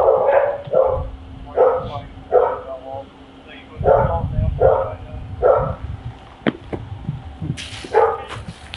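A dog barking over and over, about one bark every three-quarters of a second, stopping about six seconds in; a few sharp clicks follow.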